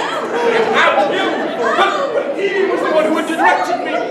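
Speech: stage actors' voices talking, more than one voice, with the echo of a large hall.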